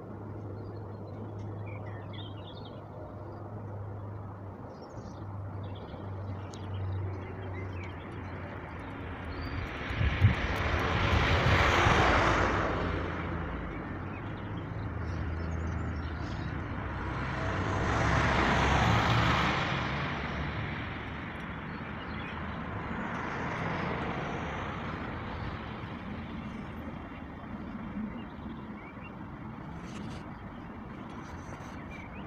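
Road traffic: two vehicles pass one after the other, each rising and fading, about ten and eighteen seconds in, with a fainter third pass later, over a steady low engine hum. A short knock comes just as the first one arrives.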